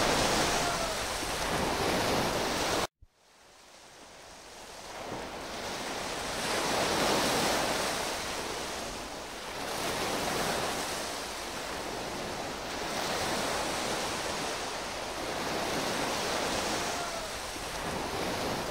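Steady hiss for the first three seconds, cut off suddenly, then the rushing noise of sea surf fades in and rises and falls in slow swells every few seconds.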